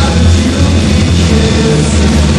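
Loud punk rock band playing, a dense, steady mix that runs without a break.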